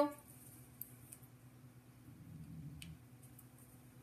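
Quiet room tone with a steady low hum and a few faint, isolated clicks.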